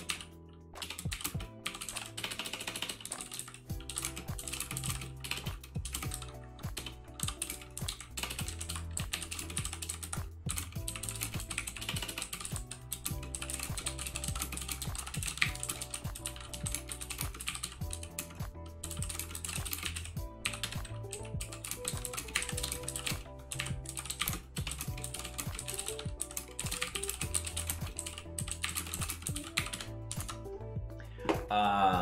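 Typing on a computer keyboard: a long, busy run of key clicks over background music.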